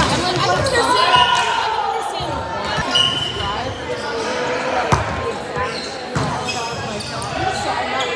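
Indoor volleyball rally in a large echoing gym: sharp hits of the ball, the loudest right at the start with a spike at the net and another about five seconds in, over players' calls and chatter.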